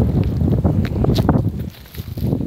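Wind buffeting the microphone in low rumbling gusts that ease off near the end, with a few short crackles of footsteps in dry leaf litter.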